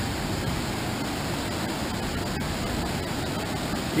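Steady rushing of a river's whitewater rapids in flood, running at about 2,100 cfs.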